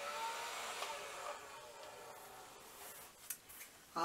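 Toy mini leaf blower running with a steady whir, then winding down and fading out from about a second and a half in. A sharp click follows near the end.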